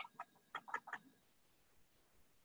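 Faint computer keyboard keystrokes: about half a dozen quick taps in the first second as digits are typed, then near silence.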